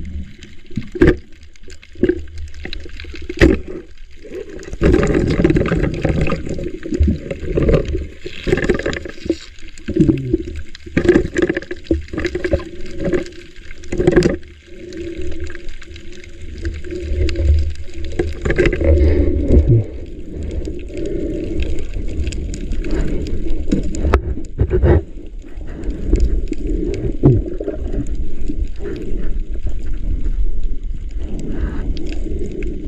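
Underwater sound picked up by a camera in a waterproof housing: water sloshing and gurgling in uneven swells, with scattered sharp clicks and knocks.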